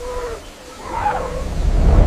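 A deep rumble that swells steadily louder toward the end, with a faint wavering cry about a second in.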